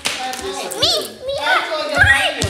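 Children's voices during play: excited calls and a high-pitched squeal a little under a second in, with no clear words.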